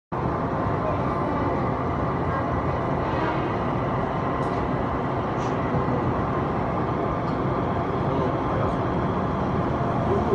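Steady noise inside an Odakyu 2000-series electric commuter train standing at a station platform, with the train beginning to pull away near the end.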